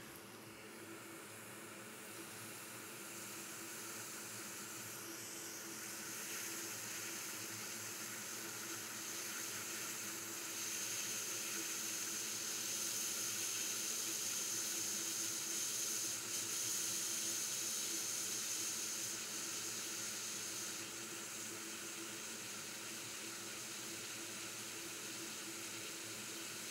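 Hot air rework station blowing a steady hiss of air with its airflow turned up, heating a BGA chip to reflow its solder balls. The hiss slowly grows louder, and a higher hissing tone joins it for about ten seconds in the middle.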